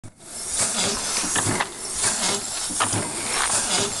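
Small antique vertical steam engine with a 4-inch bore and 6-inch stroke, running on compressed air rather than steam, its exhaust giving a rhythmic hiss that surges with each stroke, along with the clack of its moving parts.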